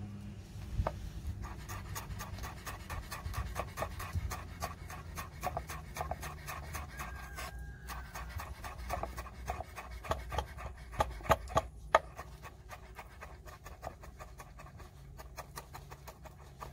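Chef's knife chopping fresh dill on a wooden cutting board: rapid, even knocks of the blade on the wood, starting about a second in, with a few harder strikes later on.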